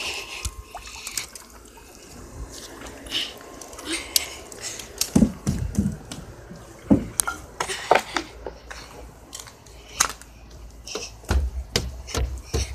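Handling noise from a wet phone carried while walking: irregular clicks and knocks, with a few low thumps in the middle.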